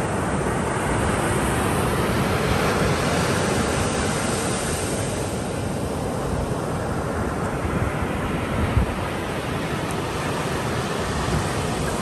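Shallow surf washing over wet sand and draining back at the water's edge: a steady rushing noise with a heavy low rumble, and a brief low bump about nine seconds in.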